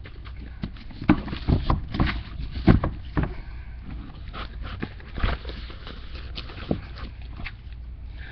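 Objects being handled and shifted close to the microphone: a run of irregular knocks, bumps and clatters, busiest in the first few seconds, with a few more later on.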